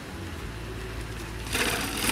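Bicycle riding down a long flight of stone steps: a faint rattle, then a loud clattering rush of noise in the last half second as it comes down to the bottom.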